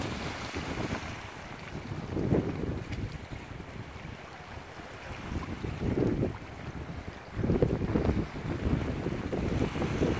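Wind buffeting the microphone in low, rumbling gusts, strongest about two seconds in, around six seconds and again near eight seconds. Under the gusts, small sea waves wash and lap against a rocky shore.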